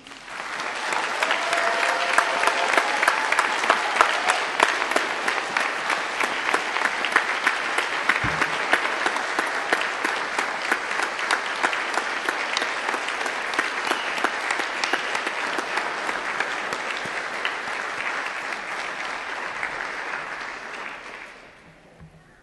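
Audience applauding at the close of a speech: many hands clapping, beginning at once, holding steady for about twenty seconds, then fading out near the end.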